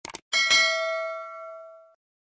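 Two quick click sounds, then a bright bell ding that rings and fades over about a second and a half: the notification-bell sound effect of an animated subscribe button being clicked.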